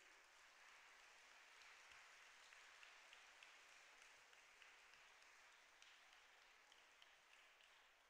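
Faint applause from a hall audience of schoolchildren, many hands clapping together, thinning and dying away near the end.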